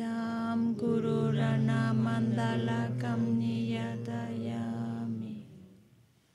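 Tibetan Buddhist prayer chanted by several voices together in long, steadily held notes at two pitches, stopping about five seconds in.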